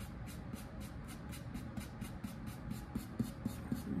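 Paintbrush bristles scrubbing back and forth on a foam board in quick, even scratchy strokes, about five a second, working a thin black paint wash into the surface.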